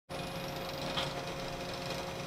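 Steady mechanical hum of machinery, a low drone with a held higher tone running through it, and a brief tick about a second in.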